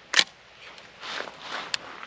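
AR-15 with a CMMG .22LR conversion bolt having its action worked: one sharp metallic clack as the short-throw bolt is run with the charging handle, followed by softer handling rustle and a faint click near the end.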